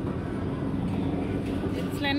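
Steady low rumble of supermarket background noise, with a faint steady hum.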